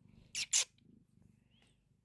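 Domestic cat purring faintly while being petted on a lap, with two short breathy puffs about half a second in.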